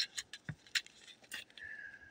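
Small clear plastic zip-top seed bags being handled, crinkling with a few short sharp clicks.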